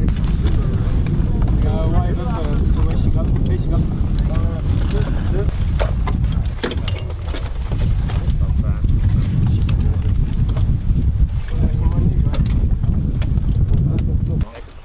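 Wind buffeting the microphone in a loud, unsteady low rumble, with faint voices and a few scattered clicks and knocks of gear.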